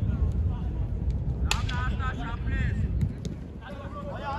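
Football players' short high-pitched shouts on the pitch, with sharp knocks of a ball being kicked, the loudest about one and a half seconds in and another about three seconds in, over a steady low rumble.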